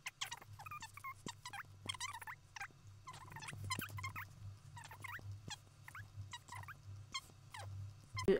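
Faint key clicks as a sum is entered into a calculator, among short high chirps and a low steady hum.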